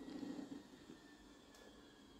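Faint stirring of a thick, simmering curry in a wok with a silicone spatula, mostly in the first second, then near silence.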